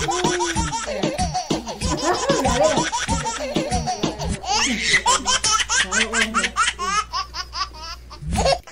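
Women laughing in quick, breathy bursts, rising to a high-pitched squealing laugh about four to five seconds in.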